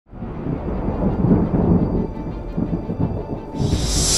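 Deep, uneven thunder rumble from a trailer sound effect, surging and fading, under music. A loud hiss starts suddenly near the end.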